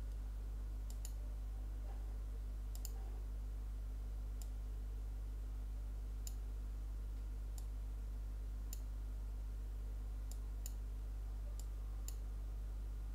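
Computer mouse buttons clicking, about ten sharp clicks, some in quick pairs, spaced irregularly a second or two apart as sliders are set, over a steady low electrical hum.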